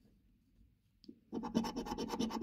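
A coin scratching the coating off a scratch card in rapid, short repeated strokes, starting about a second and a half in.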